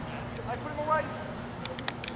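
Distant voices calling out across a baseball field between pitches, with a quick run of sharp clicks near the end.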